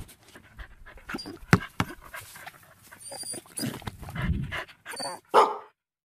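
A dog panting and snuffling, with irregular clicks, then a single short bark near the end.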